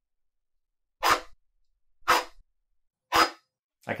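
ClearPath integrated servo motor driving a toothed-belt linear stage through three quick moves, each a short whirring burst about a second apart. It is running five percent faster than the stepper's top speed without stalling.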